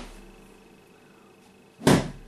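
A thick cane, about a centimetre across, strikes a sofa cushion once, loudly, near the end. The start holds the fading tail of the previous strike.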